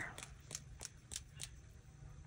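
A wet watercolor brush spattering water onto a book page: a run of faint, irregular ticks, about four or five a second.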